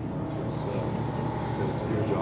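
A man's voice holding one long, level sound over a steady low background hum.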